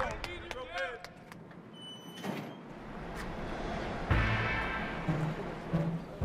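Men's voices calling out, with a brief high-pitched squeak about two seconds in; background music comes in at about four seconds.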